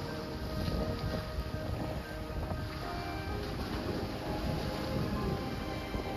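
Soft background music with held tones, over wind buffeting the microphone and the wash of the sea.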